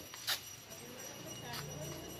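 Footsteps on a paved alley path: two sharp taps a little over a second apart, over faint background voices and a low hum.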